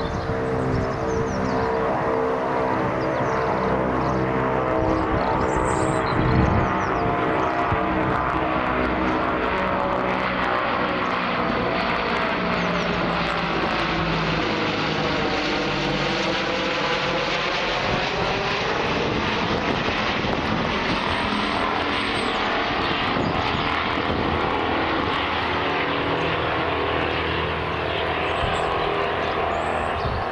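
Tupolev Tu-95 'Bear' four-engined turboprop flying overhead, a loud, steady, multi-toned propeller drone. About halfway through, as it passes over, the drone takes on a sweeping tone that falls and then rises again.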